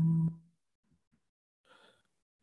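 A person's drawn-out, steady-pitched "um", held and then cut off about half a second in, followed by near silence with a faint brief sound near the end.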